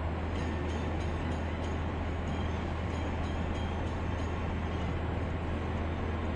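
Steady road noise of a moving car heard from inside the cabin: a low drone with tyre hiss, and faint light ticking about three times a second for the first few seconds.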